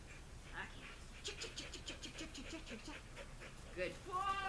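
A dog panting rapidly, a quick even run of short breaths lasting about two seconds in the middle.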